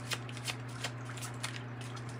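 A deck of tarot cards being shuffled by hand: soft, irregular flicks and slaps of cards about three times a second, over a steady low hum.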